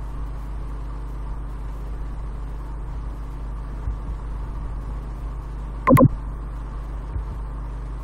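Steady low hum with a faint even hiss, the background noise of the recording, during a pause in the lecture. About six seconds in there is one short, loud voice sound from the speaker.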